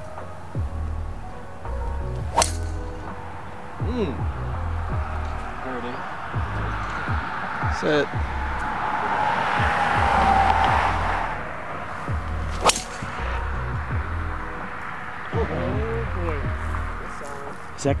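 Two golf tee shots: the sharp crack of a driver striking the ball, once about two seconds in and again near thirteen seconds, over background music with a steady beat. In between, a whooshing swish swells and fades.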